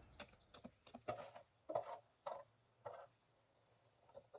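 A leaf rake scraping wet leaves across a concrete yard in a few short strokes, each a brief rustling scrape, with a quieter stretch near the end.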